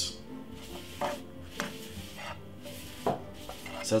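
A utensil knocking and scraping against a nonstick frying pan as a paper towel wipes oil around it: a few light, separate knocks, over soft background music.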